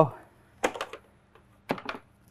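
Light clicks and rattles of plastic wiring connectors and cable being handled and pulled through under a vehicle's hood, in two short clusters about a second apart.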